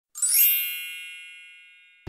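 A single bright chime sound effect, struck once with a quick shimmer at the top, then ringing out in a long, slow fade.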